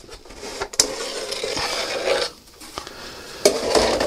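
Handling noise as a fiberglass model-aircraft cowling is slid off the front of the fuselage: a scraping rustle for about two seconds with a sharp click in it, then quieter clatter and another click near the end.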